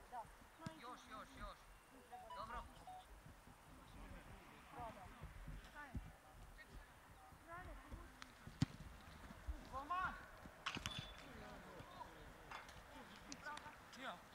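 Faint, distant shouts of players across an open football pitch, with one sharp knock about eight and a half seconds in, a football being kicked, and a few lighter knocks shortly after.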